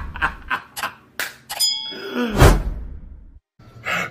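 Logo-intro sound effects: a run of sharp clicks and hits, a short bell-like ding about one and a half seconds in, then a heavy impact that falls away into a low boom, with a brief drop-out near the end.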